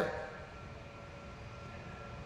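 Faint, steady room noise: an even low hum with a few thin, steady tones, with no speech.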